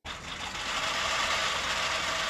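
A dense, unbroken flurry of many camera shutters clicking at once, as press photographers shoot a deep bow at a press conference. It starts abruptly and stays steady.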